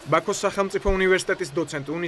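Speech: a person talking without pause.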